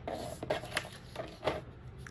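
Card stock being handled and pressed flat on a plastic scoring board, with a few short, crisp rustles and taps.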